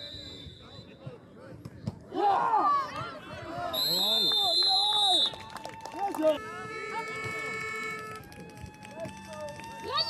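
Spectators and players shouting and cheering excitedly during a youth American football play, with a shrill whistle blast of about a second and a half in the middle, followed by long drawn-out yells.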